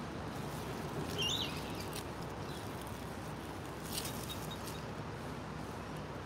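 Faint, steady outdoor background noise, with a short high bird chirp about a second in and a faint click about four seconds in.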